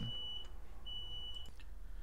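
Cockatiel whistling in the background: two short, steady, high notes about a second apart.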